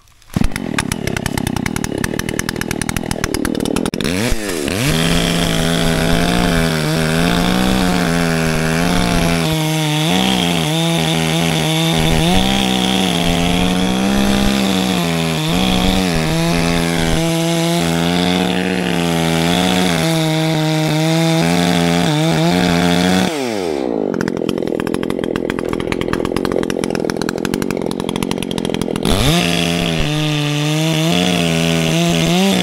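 Gas chainsaw, an Echo by its orange body, starting up and running for a few seconds, then revving up about four seconds in and cutting the back cut into a dead tree's trunk, its engine note dipping and recovering under load. About 23 seconds in the throttle drops back to a lower note, and near the end it revs up again into the cut.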